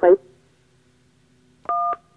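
A single DTMF keypad tone from a Motorola mobile phone, the two-tone beep of the "1" key, lasting about a third of a second near the end. It is the keypress that acknowledges the alarm in the voice menu.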